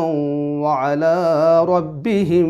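A man's voice reciting a Quran verse in Arabic in melodic chant, drawing out long held notes with a wavering, ornamented pitch in the second half.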